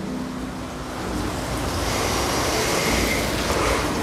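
Road traffic noise, growing louder over the first couple of seconds and then holding steady.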